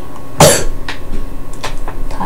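A boy's single loud, short cough about half a second in, made as part of miming swallowing a scrap of paper, followed by a few quieter clicks and mouth noises.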